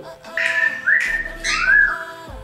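Cockatiel giving about three short whistled calls, some gliding up or down in pitch, over background music with long held tones.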